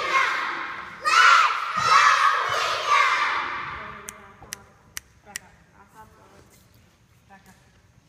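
A squad of young girls shouting a cheer in unison, their voices ringing in a large gym, dying away about three seconds in. Then four sharp claps, roughly half a second apart.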